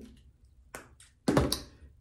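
Two light taps followed by one dull thump about a second and a quarter in, like something knocked against a hard surface.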